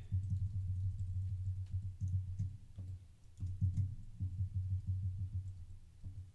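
Typing on a computer keyboard: an irregular run of key clicks with dull low thumps coming through.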